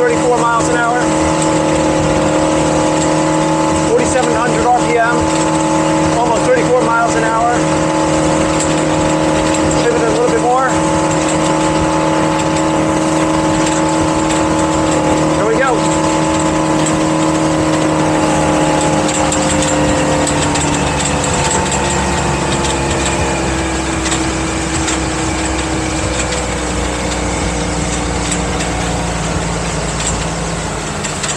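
MerCruiser MPI boat engine running steadily at full throttle, about 4700 RPM, mixed with a rush of wind and water. About two-thirds of the way through, its pitch drops as the throttle is eased back. It runs without bucking or stalling, which the owner takes as a sign that the vapor lock and engine-bay overheating are cured.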